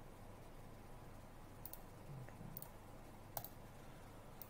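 Three faint computer mouse clicks, spread over the second half, against quiet room hiss.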